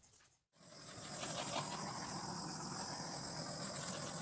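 Small handheld butane torch hissing steadily as it is passed over wet acrylic pour paint, which is usually done to pop air bubbles and bring up cells. The hiss starts suddenly about half a second in, after a moment of silence.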